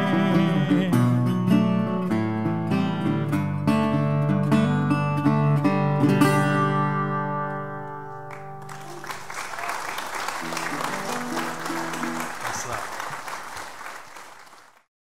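Metal-bodied resonator guitar picked through the closing phrase of a song, ending on a final chord that rings out and dies away about eight seconds in. Audience applause then starts and carries on, fading near the end.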